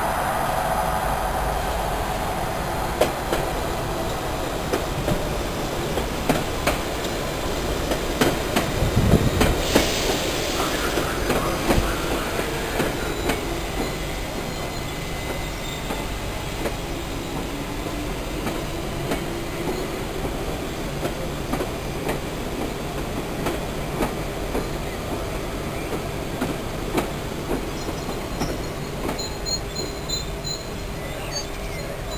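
London Underground train running into the station, its wheels clicking and clattering over rail joints and pointwork. The clatter is loudest about nine to eleven seconds in, then settles to a steadier, quieter running sound.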